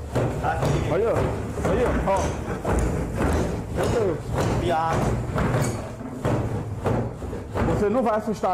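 Men talking excitedly in Portuguese, over repeated low, heavy thuds from the drawers of a wooden chest banging on their own.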